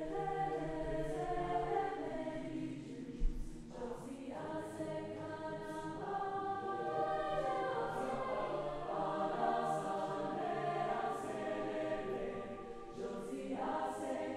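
Mixed choir singing a Haitian song, many voices in harmony moving through changing notes, with a brief thump about three seconds in.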